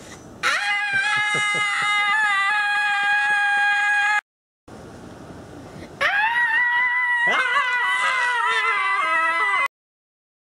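Two long, high, dog-like howls of about four seconds each, the first held at a steady pitch and the second wavering and breaking near its end.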